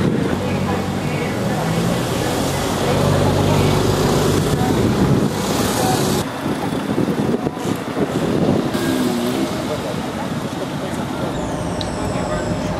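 Road traffic on a city street: car and truck engines running and tyre noise, with a steady engine hum strongest in the first half, and people's voices mixed in.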